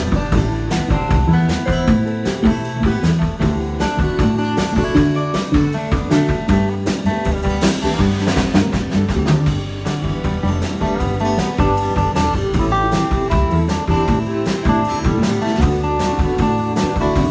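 Live band of acoustic guitars and electric bass playing an instrumental passage with a steady rhythm, with no singing.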